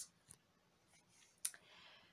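Near silence with room tone, broken by a single sharp click about one and a half seconds in and a faint soft hiss after it.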